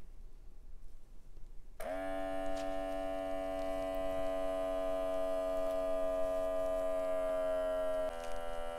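Beurer BM 49 upper-arm blood pressure monitor's built-in air pump inflating the arm cuff: a steady electric pump hum that starts about two seconds in and runs on as the cuff pressure climbs.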